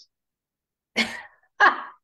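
Two short, breathy bursts from a person's voice, about two-thirds of a second apart, after a second of silence.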